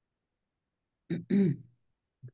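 A person clearing their throat once, about a second in: a brief catch followed by a slightly longer sound.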